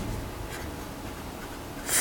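Pen writing on lined paper, the nib scratching across the page as a word is written out. The pen is running out of ink.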